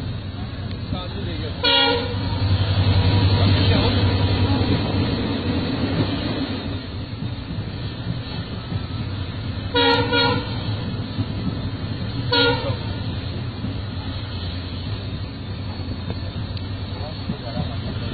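Passenger train carriage running with a steady rumble, heard from inside the coach. Short horn toots sound about two seconds in, twice in quick succession about ten seconds in, and once more about twelve seconds in.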